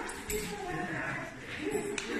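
A person speaking quietly in a large, echoing room, with a short click about a third of a second in.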